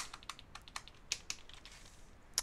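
Computer keyboard being typed on: a run of light, irregularly spaced key clicks, the sharpest one right at the start.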